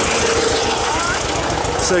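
Tractor engine idling with a steady, rapid chugging.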